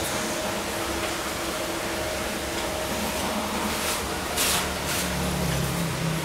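A steady mechanical hum with a faint steady whine; its low drone grows stronger a little past the middle.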